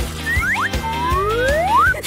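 Background music with cartoon-style comedy sound effects: two or three quick rising whistle-like glides, then one long rising slide through the second half.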